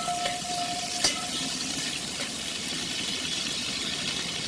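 Pork pieces sizzling steadily in sunflower oil in a kazan as a metal slotted spoon stirs them, with a light knock of the spoon on the pot about a second in. A faint steady tone sounds through the first second.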